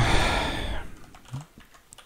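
A few clicky keystrokes on a computer keyboard, coming near the end, after a breathy exhale that fades over the first second.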